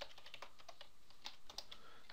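Typing on a computer keyboard: a run of faint, quick key clicks as a short name is keyed in.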